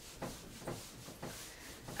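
Whiteboard eraser rubbing across a whiteboard, faint back-and-forth wiping strokes about two a second.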